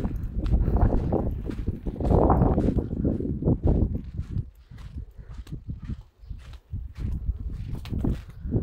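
Wind buffeting a phone's microphone, with footsteps on dry dirt and gravel; the wind eases about halfway through.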